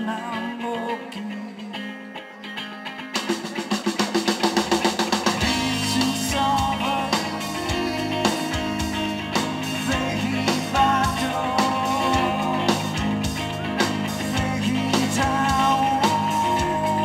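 Live rock band with a male singer. It opens quietly on sustained voice and guitar, and about three seconds in the drums and electric guitars come in with a run of quick, rising hits, then settle into a steady, full rock groove under the vocal.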